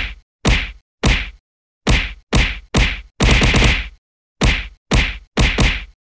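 A run of loud, sharp whacks, about fifteen in all, each dying away in about a third of a second, mostly spaced half a second apart with a quick burst of five or so just past the middle.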